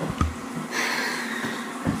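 Handling noise in a small room: a low bump just after the start and another near the end, with a short soft hiss between them.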